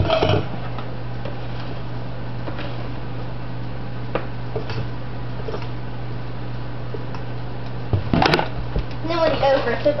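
A spoon scraping and tapping dry breading mix out of a plastic bucket into a stainless steel mixing bowl: faint light scrapes and taps over a steady low hum. A sharp clack comes about eight seconds in.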